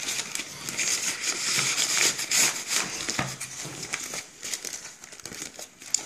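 Paper rustling and crinkling as sheets of junk mail are pushed and crammed into a brown paper envelope, with irregular crackles, a little quieter near the end.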